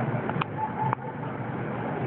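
Steady outdoor background noise, a constant rushing hiss with a couple of faint clicks.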